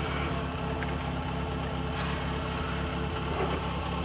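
Rally car engine idling steadily, heard from inside the cabin.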